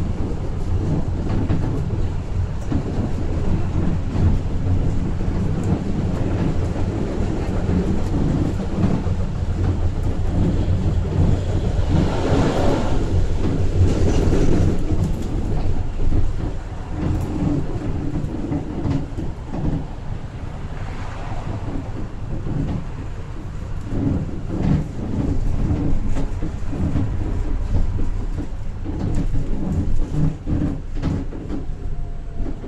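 Steady low rumble of a moving tram heard from inside the car, with scattered clicks and knocks and a louder swell of noise about twelve seconds in that lasts a few seconds.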